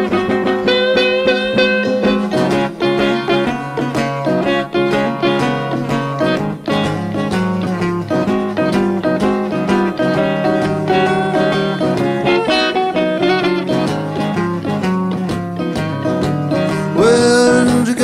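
Solo acoustic guitar picked in a blues instrumental passage between sung verses, a steady run of plucked notes over a repeating bass. The singer's voice comes back in near the end.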